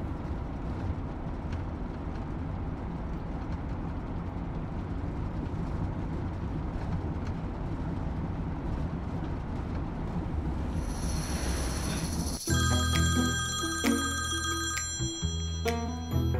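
Steady road and engine noise inside a moving car's cabin. About twelve seconds in, a mobile phone's melodic ringtone rings, its notes changing in pitch.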